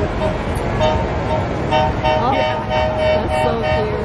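Parade vehicle's horn tooting: one short toot about a second in, then a quick run of short toots in a steady chord, over constant crowd noise.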